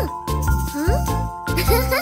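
Children's song backing music with a bouncing bass line and tinkling, jingly notes. A short upward-sliding tone sounds about a second in.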